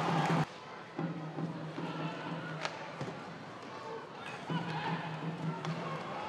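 Ice hockey arena sound during play: crowd and rink noise under faint music, with a steady low tone that comes and goes and a single sharp click about two and a half seconds in. The overall level drops suddenly about half a second in.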